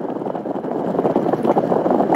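Steady rushing noise inside a car cabin, road and wind noise with wind buffeting the phone's microphone, growing slightly louder.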